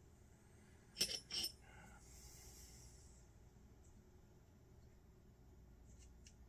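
Two quick light clicks of small carburetor parts and tools being handled about a second in, then faint room tone with a soft, brief hiss.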